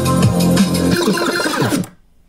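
Electronic dance track playing through a Pioneer XDJ-RR with its Beat FX switched on. About a second in the kick and bass drop out, and the remaining music trails away to quiet just before the end.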